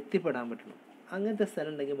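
A person's voice speaking, with drawn-out vowels in two stretches separated by a short pause.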